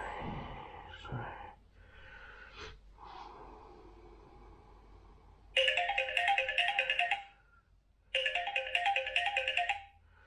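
Mobile phone ringtone: a quick repeating melody of short notes, heard twice about halfway through, each ring about two seconds long with a short gap between.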